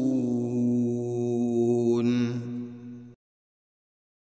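A chanting voice holding one long note, with a brief wavering of pitch about two seconds in, that cuts off suddenly a little after three seconds.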